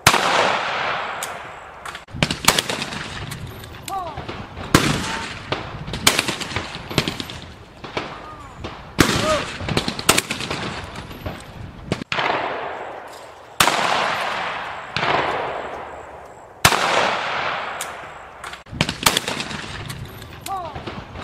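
Shotgun shots fired in quick, irregular succession, roughly one a second with some close pairs, each followed by a long echoing tail.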